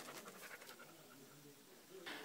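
Near silence: faint background hiss, with no distinct sound.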